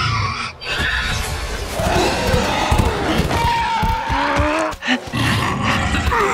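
Film fight sound effects: the sizzling blast of an energy beam, a large creature roaring and growling with gliding cries, and body impacts as the fight closes in.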